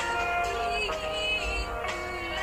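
A high singing voice performing a slow ballad live with a band, holding long notes that waver.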